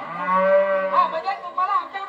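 A single long, moo-like lowing call, held for about a second at a steady pitch, followed by voices.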